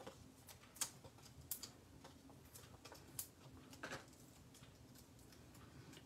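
Near silence with a handful of faint, sparse clicks and taps of paper handling: foam adhesive dots being peeled from their backing sheet and pressed onto a die-cut cardstock piece.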